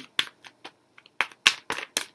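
A quick run of sharp, irregular clicks and taps, about ten in two seconds, with the loudest near the middle and at the end.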